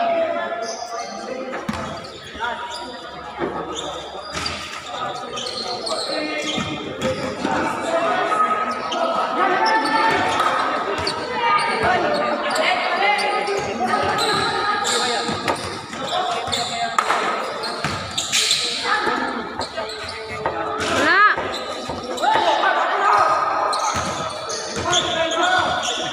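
A basketball bouncing on an indoor court among players' shouts and chatter, echoing in a large covered hall.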